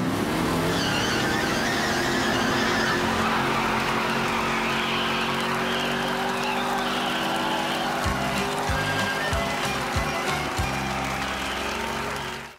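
Chevrolet Camaro revving hard as it pulls away in a burnout, tires squealing on the gravel lane, under music.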